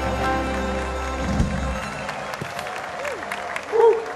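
Soft instrumental music with sustained notes and a low bass drone fades out about halfway through, giving way to a large outdoor audience applauding; a man's voice briefly starts near the end.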